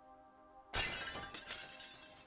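A sudden, loud crackling rustle under a second in that dies away over about a second: trading cards and their foil pack wrapper handled close to the microphone. Soft background music plays underneath.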